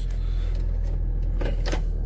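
Hummer H3 engine idling steadily, heard from inside the cabin, with two short clicks in the second half.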